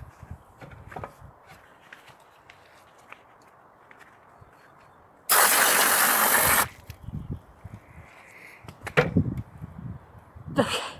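A loud rush of water pouring onto a terracotta flowerpot, starting suddenly about five seconds in and stopping sharply a second and a half later. A short loud sound follows about a second before the end.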